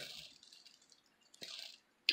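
Near silence, broken by a short soft hiss about one and a half seconds in.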